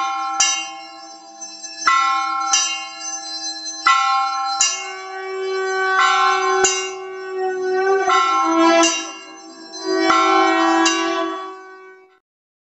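Brass temple bell rung over and over in an uneven rhythm, each stroke ringing on with several overlapping tones, dying away near the end.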